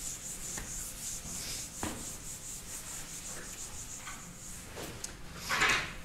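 Felt whiteboard eraser wiping marker off a whiteboard: a run of quick back-and-forth rubbing strokes, with one louder, longer stroke near the end.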